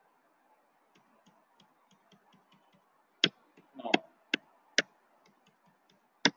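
Computer keyboard keys pressed: a run of light taps about three a second, then three loud sharp key presses about half a second to a second apart, stepping through an accounting voucher to its accept prompt.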